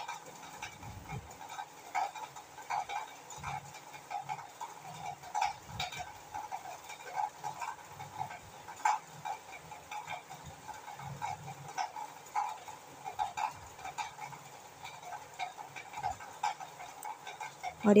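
A steel spoon clinking and scraping against an aluminium pot in irregular light taps as yogurt is spooned onto spiced raw chicken.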